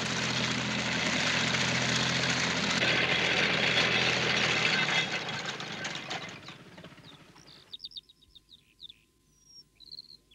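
Small farm tractor's engine running with a steady low hum, dying away over about two seconds past the middle as the tractor stops. Then a few short, high bird chirps.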